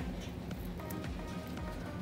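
Quiet background music, with a few held tones about halfway through.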